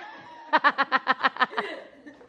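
A person laughing: a quick run of about ten short "ha" pulses, each falling in pitch, lasting about a second and starting about half a second in.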